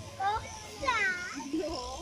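A child's high-pitched voice calls out twice, the second and louder call about a second in with a falling, meow-like pitch. Electric sheep-shearing clippers hum faintly underneath as they cut the fleece.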